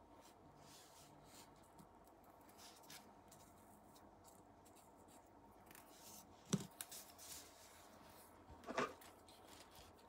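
Faint handling of small metal airgun regulator parts, with an Allen key and a brass set screw. Two sharp metallic clicks come about six and a half and nearly nine seconds in as the parts are set down on the work mat, and the second one rings briefly.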